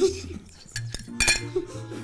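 Metal cutlery clinking against a plate a few times, sharply, the loudest clink just over a second in.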